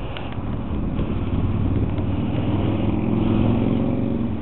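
A motor vehicle's engine running nearby, a steady low hum that grows louder toward the end and then begins to fade.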